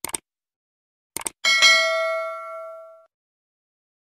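Subscribe-button animation sound effect. A pair of short mouse clicks comes at the start and another pair just after a second in. Then a single notification-bell ding rings out and fades over about a second and a half.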